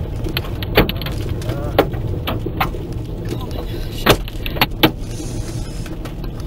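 Hail hitting a car's roof and windshield, heard from inside the cabin: a continuous patter with about six separate loud, sharp strikes scattered through it.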